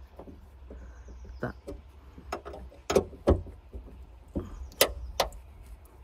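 A metal tool clicking and knocking against the rear roof-cover latch of a Mercedes W208 CLK convertible as the latch is worked open by hand: several sharp, irregular clicks.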